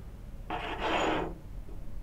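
Metal lens extension tube set down and slid across a cutting mat: one brief scrape, lasting under a second, that swells in its second half.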